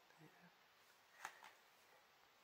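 Near silence: room tone, with one faint, short sound a little over a second in.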